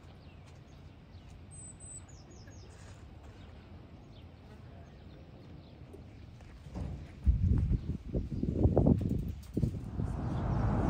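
Faint open-air ambience with a few thin, high bird chirps. About seven seconds in, a loud low rumble with irregular knocks starts suddenly and runs on.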